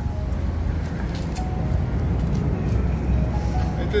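Steady low rumble of outdoor city ambience, with faint snatches of distant music.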